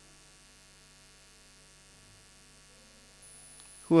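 Faint steady electrical mains hum from the microphone and sound system. A man's voice starts again at the very end.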